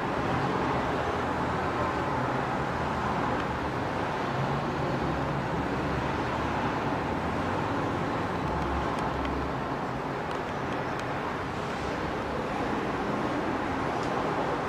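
Steady road and engine noise of a moving car, heard from inside the car.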